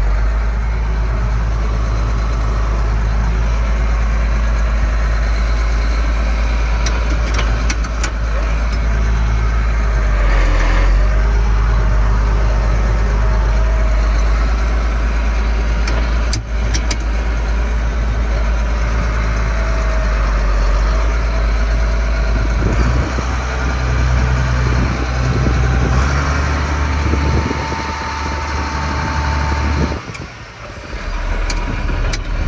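1994 Case IH 7220 Magnum tractor's six-cylinder diesel engine running steadily under the cab floor while the power-shift tractor is worked through its gears, with its note shifting a few times in the second half. A few sharp clicks sound about eight and sixteen seconds in, and a thin steady whine comes in near the end.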